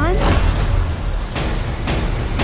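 Film sound effect for a blazing energy orb: a loud hissing rush with a faint high whine rising slowly through it, broken by sharp hits near the end.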